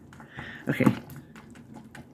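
A plastic spoon stirring sauce-coated chicken pieces in a small stainless saucepan: soft, quiet, wet stirring sounds, with a brief spoken 'okay'.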